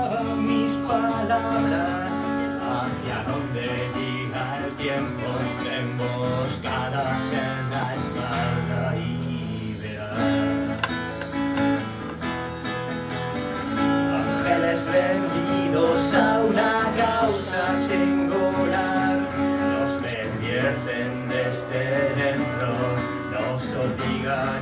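Acoustic guitar strummed in a steady rhythm, played live as part of a pop-rock song.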